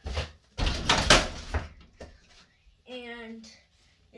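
A one-handed dunk on an over-the-door mini basketball hoop: a thump at the start, then about a second in a loud clattering crash as the ball and hand hit the hoop, rattling the rim and door for about a second. A short burst of a child's voice follows near the end.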